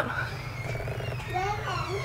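A young child's voice, faint and in the background, babbling in short rising and falling sounds, over a low steady hum.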